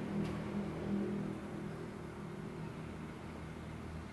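A steady low hum with a faint hiss: background room noise.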